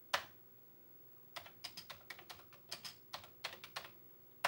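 Commodore 64 keyboard keys being typed: a single keystroke near the start, then a quick run of about a dozen keystrokes in the second half, over a faint steady hum.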